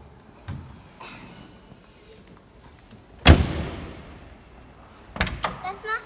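A door slamming once, loud and sudden, about three seconds in, with a long echo off a large hall. A few quicker knocks follow about two seconds later.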